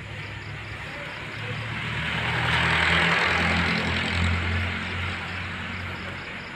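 A motor vehicle passing by: engine hum and tyre noise swell to a peak about three seconds in, then fade.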